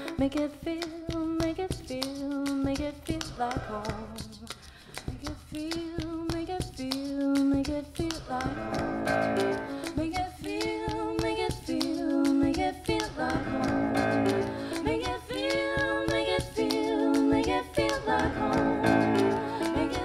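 A woman singing a song while accompanying herself on a grand piano, in held, wavering sung phrases over the piano. It grows fuller and a little louder about eight seconds in.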